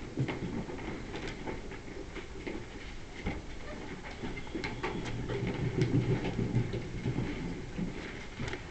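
Classroom background noise: low shuffling and rustling, with scattered small clicks and knocks.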